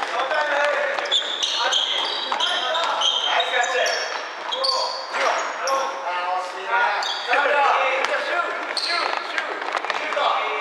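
Basketball play on a wooden gym floor: sneakers squeaking in many short, high chirps as players run and cut, with the ball bouncing and thudding on the boards.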